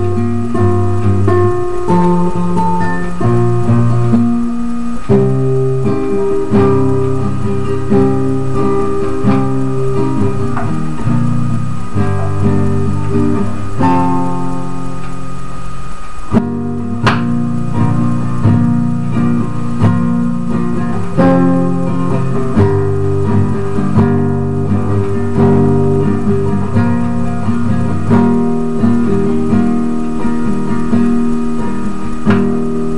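Classical guitar played solo in standard tuning with a capo at the third fret: sustained chords and melody notes that change every second or two. There is a short break about halfway through, with a sharp click as the playing resumes.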